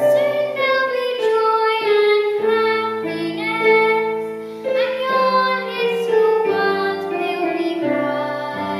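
A young girl singing a solo melody with long held notes, accompanied on a keyboard that sustains steady chords beneath her voice.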